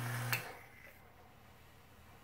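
Low electrical hum from a homemade 120-volt AC e-cigarette rig while its 24-volt AC relay is held on to fire the coil. The hum stops with a sharp relay click about a third of a second in, leaving only a faint breath as the vapour is exhaled.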